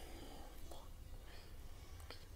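Faint breathy sounds from a person close to the microphone, strongest near the start, over a steady low hum.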